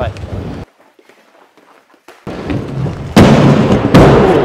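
Aggressive inline skate wheels rolling in, then a sudden loud grinding slide from about three seconds in as the skater's Kaltik Flat V.2 frames lock onto a ledge in a royale grind.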